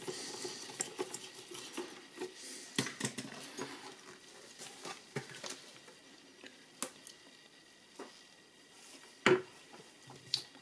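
Scattered small clicks and knocks as a screwdriver works the bolts on the back of a plastic instrument cluster, and then as the cluster's housing and lens are handled. The loudest knock comes near the end.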